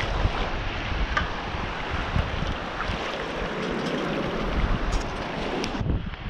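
Wind noise on the microphone over small waves washing across shallow water on a sandy beach.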